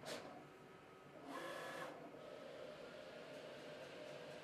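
Roland cutting plotter running a perforated cut: a brief carriage stroke at the start, then a longer whirring move of the cutting carriage with a faint motor whine about a second and a half in, settling into a faint steady hum.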